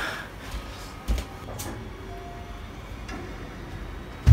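A few knocks and thumps, the sharpest about a second in and another half a second later, over quiet room noise: footsteps and movement as someone hurries through a house.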